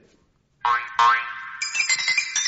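Comic musical scene-transition sting from a radio serial: two upward-sliding twangy notes, then, about one and a half seconds in, a quick run of bright, high notes begins.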